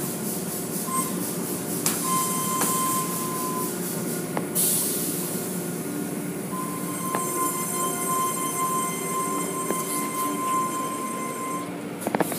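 Automatic car wash machinery running: a steady whir from the motors and spinning cloth brushes with water spraying and running off the car, and high whining tones above it. A whine comes in for a second or two early on and again for several seconds later, and there is a short burst of spray hiss about four and a half seconds in.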